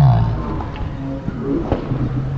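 Street traffic noise: a low engine hum fades away at the start, then a steady rumble with scattered faint voices and a couple of sharp clicks near the end.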